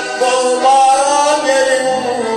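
A man singing a Turkmen folk song in long, bending held notes, accompanied by a piano accordion.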